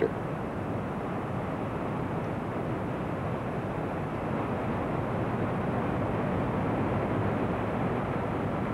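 Steady rushing noise of a helicopter in flight, heard from on board, getting slightly louder about halfway through.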